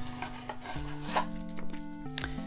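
Soft 8-bit lo-fi background music with steady notes stepping in pitch. Over it are a few light scrapes and rustles of trading cards being slid and shuffled between the hands, the clearest about a second in.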